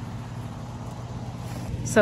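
Air conditioning unit running with a steady low hum.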